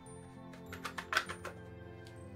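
Ink pad being tapped onto a rubber stamp mounted on a clear acrylic block to ink it: a quick run of light taps about a second in, loudest near the middle, over soft background music.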